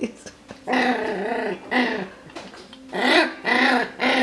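A Coton de Tulear puppy vocalizing at the pen wall, about four drawn-out calls that rise and fall in pitch, the first the longest: the calls of a puppy wanting out of its playpen.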